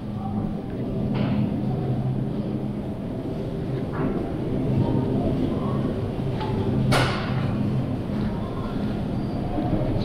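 Shopping cart rolling over a store floor, a steady low rumble, with one sharp click about two-thirds of the way through.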